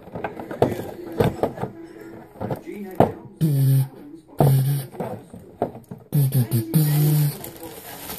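A man hums or vocalizes a wordless tune in a few long, steady notes. Under it, clear plastic packaging crinkles and rustles with sharp little crackles as he handles it.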